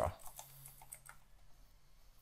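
Computer keyboard typing: a quick run of faint keystrokes as a short word is typed.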